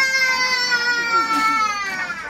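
A young child's long, high wail held as one continuous cry, its pitch slowly falling until it stops at the end.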